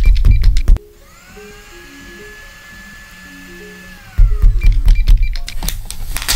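Paper rustling and tapping close up, then, about a second in, an electric blender motor starts with a rising whine, runs steadily for about three seconds and winds down, after which the paper handling resumes.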